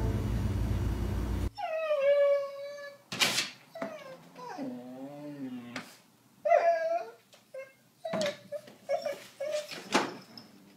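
A dog whining and whimpering in a string of high cries, one long and wavering, then several shorter ones, with a couple of sharp knocks in between. Music plays for the first second and a half.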